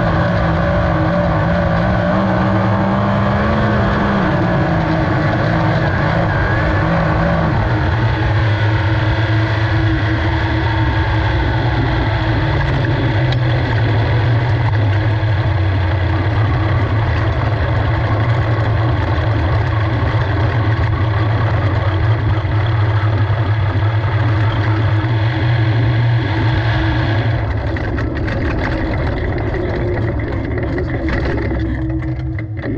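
Onboard sound of a 360 winged sprint car's V8 engine. Its pitch falls in steps over the first ten seconds or so as the car slows, then holds low and steady as it rolls at low revs, a little quieter near the end.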